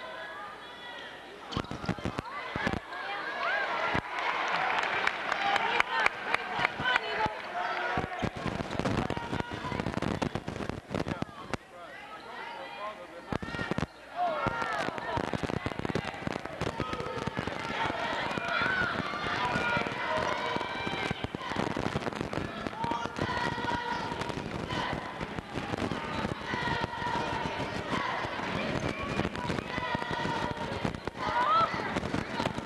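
Sounds of a basketball game in a gym: a ball bouncing on the hardwood and sneakers squeaking, with many sharp knocks, over crowd voices and shouting from players and spectators.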